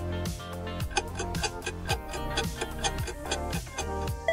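Background music for a quiz countdown, with a steady clock-like ticking over it.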